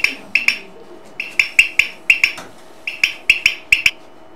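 Glass biidoro (poppen) toy being blown, popping with sharp ringing clicks in three quick runs of several pops each.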